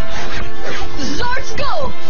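TV soundtrack: background music with voices and a brief rasping sound effect.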